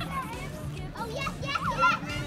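Children's excited voices and calls over background music.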